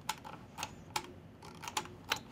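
A few light, scattered clicks of computer keys, irregularly spaced and quiet.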